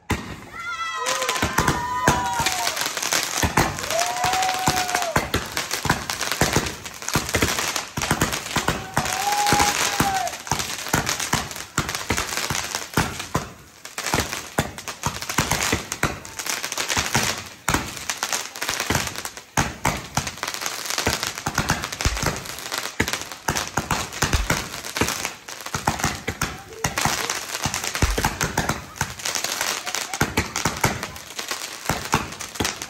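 Close-range fireworks going off in a dense, unbroken barrage of crackles and pops, starting about a second in, as ground-launched fireworks throw up showers of sparks.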